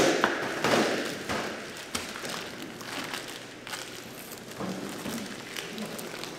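Vacuum-packed beef being cut open and unwrapped on plastic cutting boards: knocks and thuds of meat and knives on the boards, with rustling of the plastic bags. The loudest knocks come in the first second, then smaller taps and crinkling.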